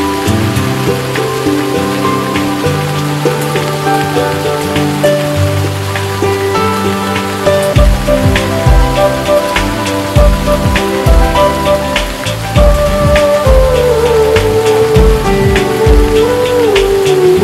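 Steady rain falling, its drops heard as many sharp ticks, under background music of sustained notes. A low beat comes in about halfway, and a wavering melody line rises and falls near the end.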